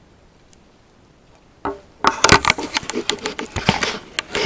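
Camera handling noise: after a quiet first half with a few faint ticks, a rapid, loud run of knocks, clicks and rustles begins about halfway through as the camera is moved and set down on a table.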